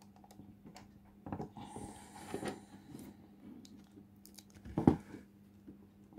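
Small plastic clicks and rustling from the mechanical speedometer's odometer mechanism being handled and refitted by hand, with one louder sharp click near the end as a part is pressed into place.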